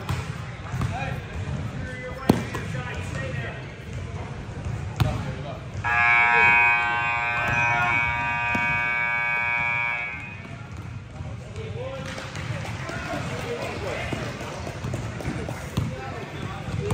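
A basketball bouncing on a gym floor amid players' voices, with a loud, steady electronic buzzer sounding for about four seconds starting about six seconds in.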